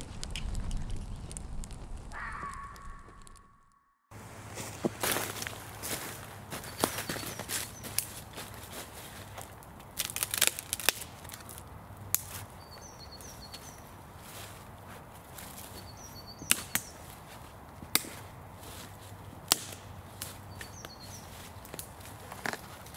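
Dry dead wood cracking sharply several times as a long branch is bent and pulled, with steps and rustling in dry leaf litter. A small bird chirps briefly a few times in the background. The first few seconds hold a short intro sound that fades out.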